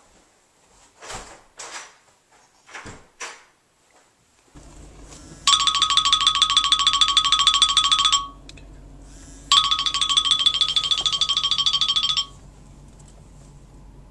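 An iPhone ringing with an incoming call: two rings of rapidly trilling tone, each just under three seconds, over a steady low hum from a car's cabin. A few soft knocks come before the ringing starts.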